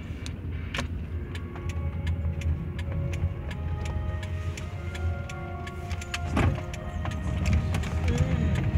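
Steady road and engine rumble inside a moving car's cabin, with faint music from the car stereo and a scattering of light clicks.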